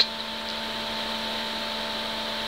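A steady machine-like hum with a hiss, holding several fixed tones, with no other events.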